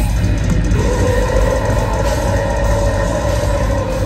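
A brutal death metal band playing live, with distorted guitars and dense drums and bass, heard from within the club crowd. About a second in, a long high note is held, sagging slightly in pitch at the end.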